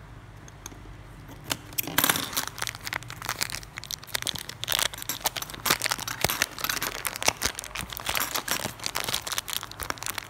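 Clear plastic packaging crinkling and crackling in irregular bursts as fingers work at it, starting about a second and a half in.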